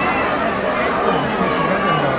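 Crowd of spectators chattering, many voices talking over one another in a steady babble.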